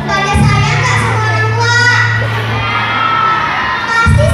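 Children's voices shouting together, a crowd of young voices over a steady low hum.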